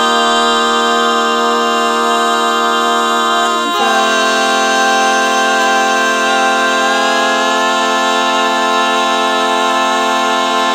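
Male voices singing four-part a cappella barbershop harmony, holding long sustained chords. The chord shifts to a new one about four seconds in, and that chord is held to the end.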